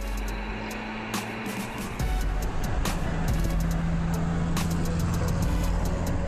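Renault 4's four-cylinder engine running as the car drives along, louder from about two seconds in, with background music over it.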